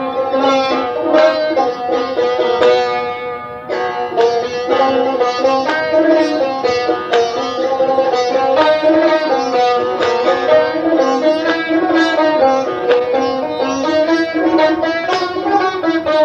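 Persian tar played solo: a continuous, fast run of plucked notes with rapid repeated picking, in the chahargah mode (a reng, a dance-like piece).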